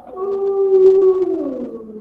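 A long howl, held on one pitch for about a second, then sliding down and fading near the end.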